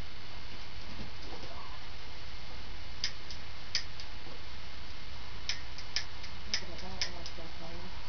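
Dry twigs crackling as the fire catches: sharp, irregular snaps, a few starting about three seconds in and a quicker run of them near the end, over a steady background rush.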